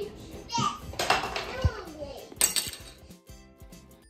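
Voices, with children speaking, over light background music; after about three seconds the voices stop and only the music is left, fading. A couple of short knocks come among the voices.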